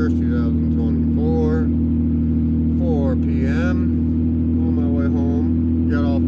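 Steady low drone of a car being driven, heard from inside the cabin, with a voice heard briefly at intervals over it.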